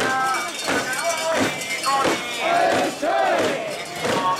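Many mikoshi bearers shouting a rhythmic carrying chant in unison, short shouted calls repeated about every half second as they heave the portable shrine along.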